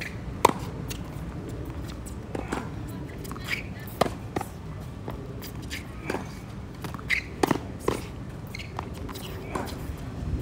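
Tennis balls struck with racquets and bouncing on a hard court during a rally: a series of sharp pops at irregular intervals, the loudest about half a second in.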